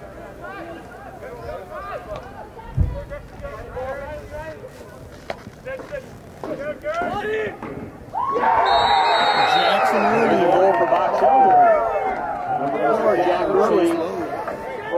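Spectators in the stands of a lacrosse game chattering, then about eight seconds in the crowd breaks into loud cheering and shouting that eases off near the end. A single dull thump comes about three seconds in. A brief high whistle tone sounds as the cheering starts.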